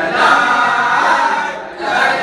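A group of teenage boys chanting a Galatasaray supporters' song together in unison, with a brief drop just before the end as one line finishes and the next starts.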